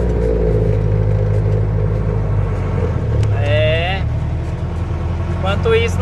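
Mercedes-Benz 608 light truck's diesel engine running steadily while driving, heard from inside the cab.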